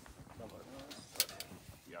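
Soft talking and murmuring voices, with two sharp clicks a little over a second in.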